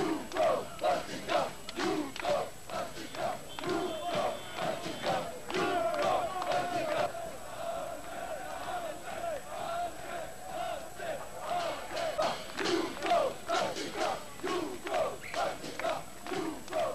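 A large crowd of fans chanting and shouting in a steady rhythm, about two shouts a second, with clapping.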